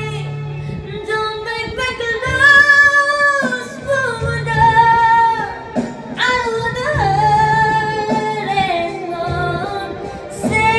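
A woman singing a song over instrumental accompaniment, holding several long notes.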